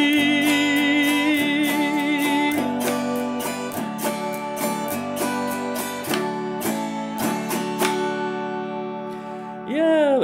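Autoharp strummed in a steady rhythm to close out a song, with a long sung note held with vibrato over the first two and a half seconds. The strumming then carries on alone, thinning out and fading toward the end.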